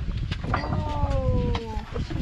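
A cat meowing once: one long call of over a second that falls slowly in pitch.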